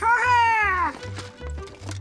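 A cartoon parrot's squawk: one high, arching call lasting under a second that drops in pitch as it ends, over children's background music with a steady beat.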